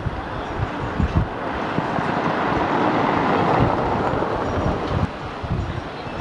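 Wind buffeting the microphone over outdoor street noise. A broad rushing sound swells for a few seconds, then drops off about five seconds in.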